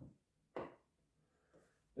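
Two faint knocks about half a second apart, then a fainter tap near the end, as a walking stick is stood back against a wooden cabinet.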